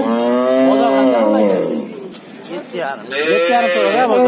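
Young cattle mooing: one long moo lasting nearly two seconds, then another starting about three seconds in.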